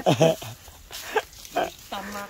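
Men laughing: a loud burst of laughter in the first half-second that trails off into a few short, fainter voice sounds.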